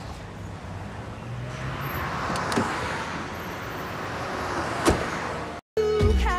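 Street traffic with a car passing by, swelling from about a second and a half in. A sharp knock comes near five seconds, and the sound cuts off suddenly just before the end.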